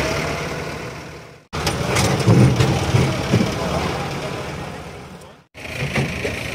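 Backhoe loader's diesel engine running during a house demolition, with people's voices over it and a few knocks about two seconds in. The sound breaks off abruptly twice.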